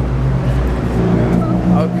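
Steady low engine hum of an idling vehicle on the street, with faint voices in the background near the end.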